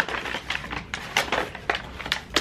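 A brown paper bag crinkling and rustling as it is handled and opened, in a run of short irregular crackles.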